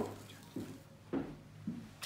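A fingertip dragging through fine sand in a shallow wooden tray, with four soft low thuds about half a second apart as the hand presses and lifts.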